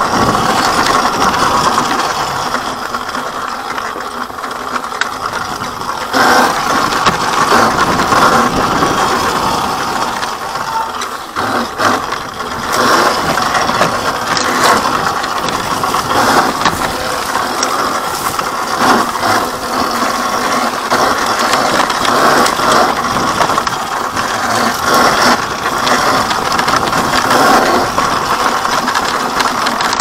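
Electric dirt bike ridden over a rough, rocky trail: a continuous, loud mechanical rattling and clattering from the bike, with frequent knocks as it goes over bumps.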